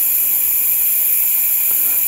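Compressed air hissing steadily out of a workshop air compressor through an air hose, as the tank pressure is bled down.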